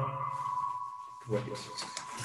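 A steady high electronic tone holds throughout, with a short burst of voice over it about two-thirds of the way through.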